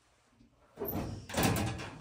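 Hinged steel cover door of a residential electrical breaker panel being swung shut: a brief swinging, scraping sound from a little under a second in, then a sharp metallic bang as it closes and latches about a second and a half in.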